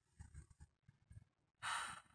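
A woman's short audible breath near the end, just before she resumes speaking, after a few faint small mouth sounds.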